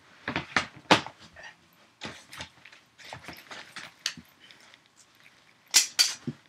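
Rummaging in a plastic storage tote: a string of knocks, clacks and rustles as things are moved about, with a sharp knock about a second in and another near the end.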